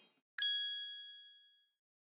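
A single bright chime, a ding sound effect for an animated logo card: one sharp strike a little under half a second in that rings on a clear two-note tone and fades away within about a second and a half.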